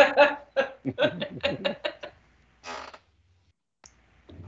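A person laughing in a quick run of short chuckles for about two seconds, followed by one breathy exhale.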